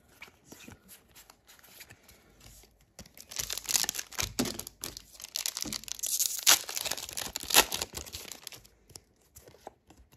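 Foil wrapper of a Pokémon booster pack being torn open and crumpled by hand. Faint card-handling clicks come first; about three seconds in, a dense crinkling and tearing starts and lasts about five seconds, with the sharpest crackles in its second half.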